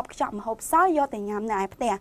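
A woman speaking continuously: only speech, no other sound.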